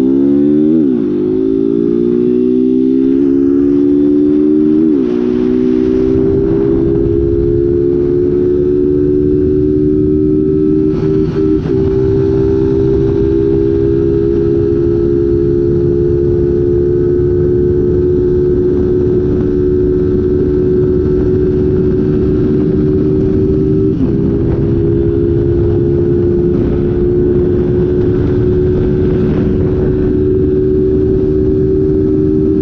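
A Honda 160 single-cylinder motorcycle engine pulls hard at wide-open throttle, shifting up twice in the first five seconds. It then holds a high, slowly rising note in top gear as the bike runs toward top speed, with a short dip near 11 s and again near 24 s. Wind rushes over the microphone.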